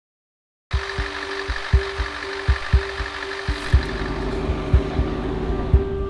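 Coach engine idling, heard from inside the bus: a steady hum with low knocks a few times a second. It starts after a moment of dead silence.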